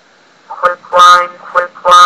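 A text-to-speech voice reading dictionary words aloud, starting about half a second in after a short pause.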